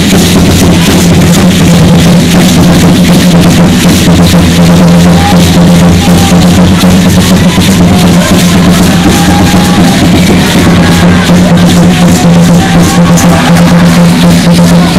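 Loud, continuous drumming with a steady beat, the music the Aztec dancers are dancing to.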